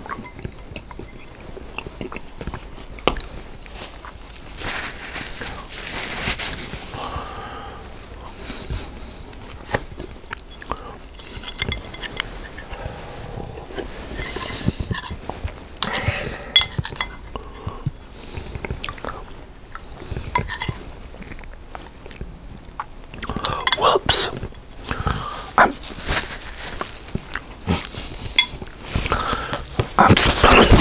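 Close-miked sounds of a man eating tortellini and sausage soup: slurps from the spoon, chewing, and wet mouth clicks and smacks. About halfway through, the bowl is tipped up to drink the broth.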